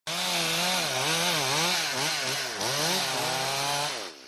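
Chainsaw running with its engine pitch rising and falling over and over, as the revs change.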